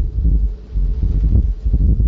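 Loud, uneven low rumble in the recording with nothing higher-pitched above it.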